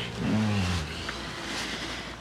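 A person's short low moan, sliding slightly down in pitch, about half a second in, over soft breathing.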